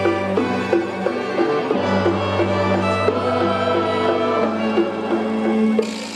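A rondalla of guitars, bandurrias and lutes playing a tune together: a sustained bass line under quickly repeated plucked notes. The music breaks off abruptly near the end.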